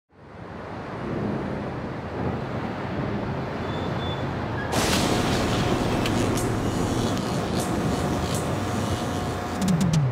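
City street ambience with traffic: a steady rush of passing cars fading in from silence, growing fuller a little before halfway, with a low sound sliding down in pitch near the end.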